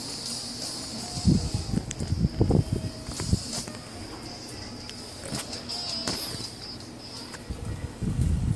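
Music playing through a cheap P99 over-ear headphone's earcup held up to the microphone, with a few louder low thumps between about one and three and a half seconds in.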